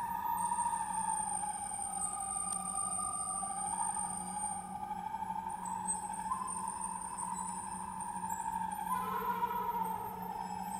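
Air-driven acoustic siren instrument with live electronics sounding one sustained whistling tone that wavers slowly in pitch, sagging around the middle and stepping up near the end, over a steady low hum.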